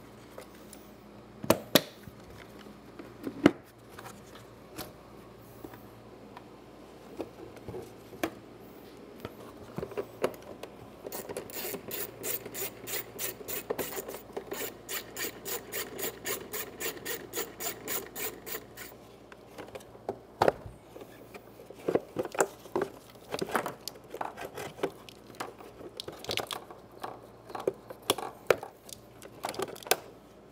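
Hand ratchet clicking rapidly and evenly for about eight seconds in the middle as bolts holding the plastic air box inlet are undone. Around it, scattered clicks and knocks of plastic engine-bay parts being handled, more frequent near the end as the air box is lifted out.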